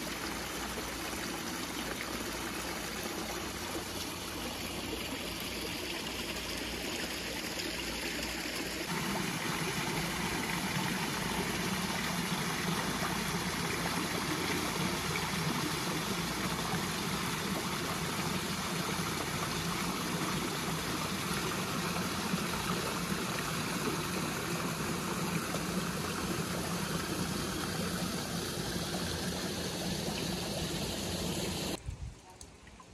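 Small garden waterfalls splashing steadily: water spilling into a rock-lined stream, then a little cascade falling into a pond. About nine seconds in the splashing gets a little louder and fuller.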